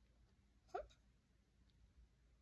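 Near silence, broken about three-quarters of a second in by one short vocal noise from a man, quickly rising in pitch.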